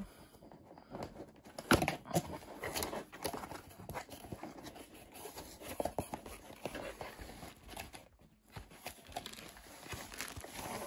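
A paperboard kit box being handled and opened by hand: irregular scrapes, taps and rustles as the end flap is worked open, with the loudest snap just before two seconds in.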